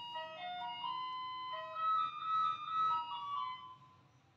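A short electronic jingle: a simple melody of steady, held notes with no beat, loudest about halfway through and stopping shortly before the end.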